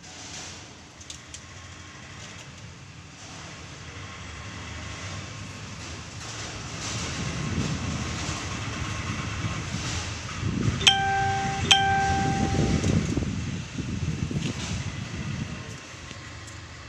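A heavy vehicle rumbling past, swelling over several seconds and fading near the end. About two-thirds of the way through, a horn sounds twice in quick succession, the loudest thing heard.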